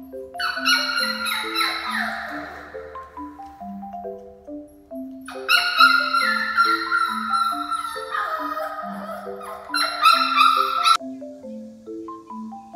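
A six-week-old Jindo puppy whining in two long high-pitched bouts, falling in pitch, with the second cutting off abruptly near the end. Light marimba-style background music plays throughout.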